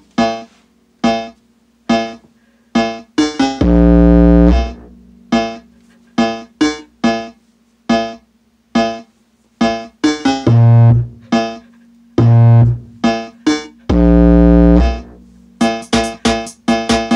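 Electronic music played loudly through a Logitech Z906 subwoofer and speaker system in a bass test. It has short, separate keyboard-like synth notes and a few longer held notes, two of them very deep bass notes about four and fourteen seconds in.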